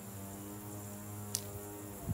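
A steady low hum with several even overtones, and one brief sharp click a little past halfway.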